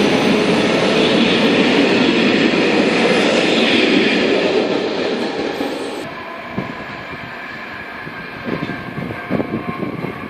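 Passenger train coaches rolling past close by at speed, a loud steady rush of wheels on rails. About six seconds in the sound drops abruptly to a quieter rumble of the train going away, with a few clacks of wheels over rail joints near the end.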